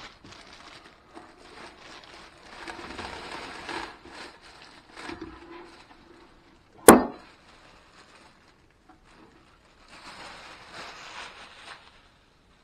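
Clear plastic bag crinkling as a metal-cased power inverter is pulled out of it, then one sharp knock about seven seconds in as the inverter is set down on a wooden desk, and more plastic rustling near the end.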